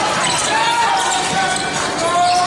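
A basketball game on a hardwood gym court: a basketball being dribbled, sneakers squeaking in short high glides, and voices calling in the hall.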